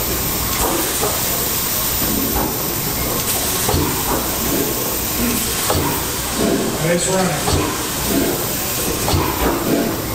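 A 1925 Otto 175 hp single-cylinder natural-gas engine turning over during its start on compressed air. Air hisses steadily, and slow, uneven thumps come from the engine's strokes, with voices in the background.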